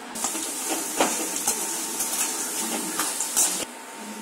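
Sun-dried rice vadagam frying in hot oil: a steady sizzle with scattered crackles, cutting off suddenly near the end.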